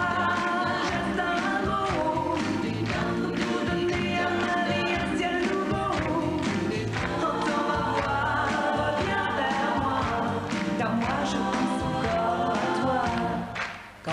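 A woman singing a pop song with a full band behind her, the beat steady throughout; the music drops away briefly just before the end.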